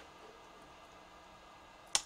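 Near silence with faint room tone, broken near the end by one short, sharp click.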